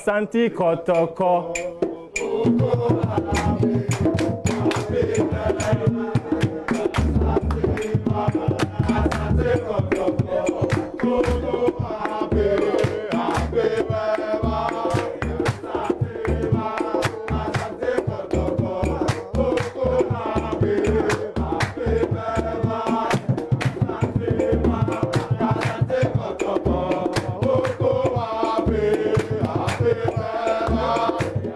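A group of football supporters singing a chant-like song together, with drums and percussion beating along. The singing starts at once, and the drums come in about two seconds in.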